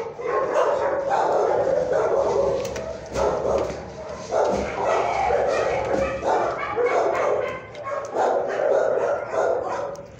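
Dogs barking and yipping over and over, calls of about half a second to a second each running into one another with hardly a break.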